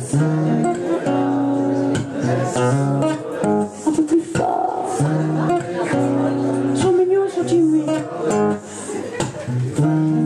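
Acoustic guitar strummed in a steady rhythm, chords changing every second or so, with a woman's voice singing over it.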